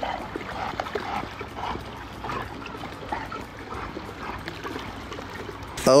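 Dogs swimming in a pool: water lapping and trickling as they paddle, with a few quiet dog sounds mixed in.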